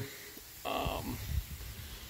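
A short breath noise from the person filming, about half a second in, followed by low rumbling as the phone is moved around.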